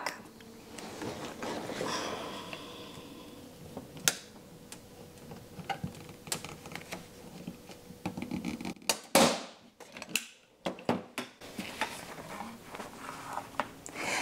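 Faint handling sounds and a few light clicks as a hand-held staple gun is set against a wooden frame bar. Near the middle there is a sudden stretch of dead silence, where the loud staple shot has been muted out.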